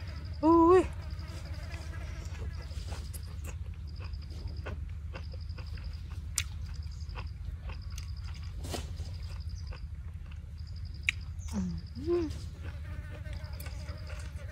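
Close-up eating by hand: chewing with small wet clicks and smacks. Throughout, an insect chirps in short repeated trills, about one every one to two seconds, over a steady low hum. A brief vocal murmur comes about half a second in, and an 'ui' exclamation near the end.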